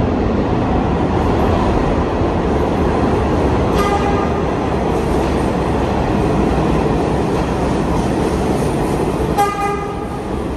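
R211T prototype subway train rumbling as it approaches along the station track, with a short horn toot about four seconds in and another near the end.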